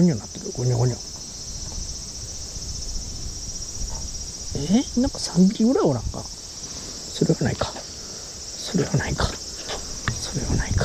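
Steady high-pitched chorus of summer insects. A man's voice mutters briefly a few times, loudest about five to six seconds in.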